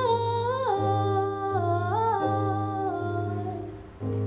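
A woman's wordless vocal line, humming a slow melody that steps down in pitch between held notes, over sustained electric keyboard chords; the sound fades away near the end.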